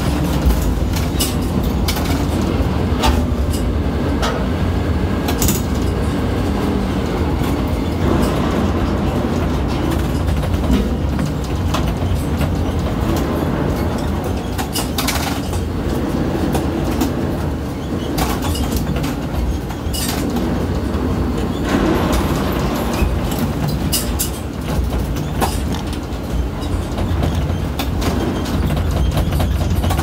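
Ship-to-shore container crane heard from the operator's cab: a steady low machinery rumble with scattered clicks and knocks while the spreader is worked down a container ship's cell guides.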